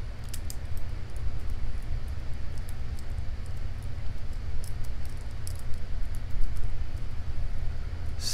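Lock pick and tension wrench working the pins of a small Arrow lock cylinder: scattered light metallic ticks and clicks, over a steady low rumble.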